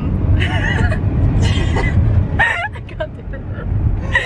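Steady low rumble of a car's road and engine noise heard inside the cabin while driving, with a girl's voice and laughter over it.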